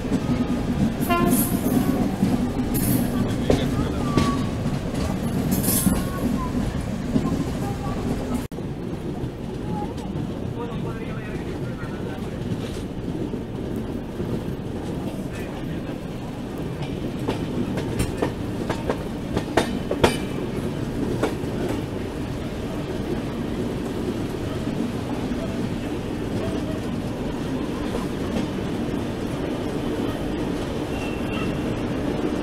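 Passenger train wheels rumbling and clattering over points and a diamond crossing, heard from a coach window, with short wheel squeals. About eight seconds in it switches to the steady rumble of an approaching electric-hauled express train (WAP-7 locomotive), with a few sharp clicks near the middle.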